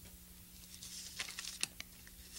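Faint rustling and a few light crackles of thin Bible pages being turned, mostly in the second half.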